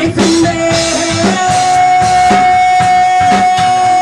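Live rock band playing: a drum kit and electric guitar, with one long, steady high note held from about a second in.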